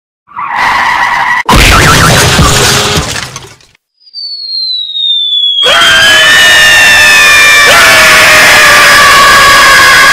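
Cartoon car-crash sound effects: a short loud crash about a second and a half in, a falling whistle around four seconds, then a long loud screech with screaming.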